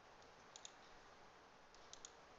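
Faint computer mouse double-clicks, two pairs about a second and a half apart, over near-silent room tone.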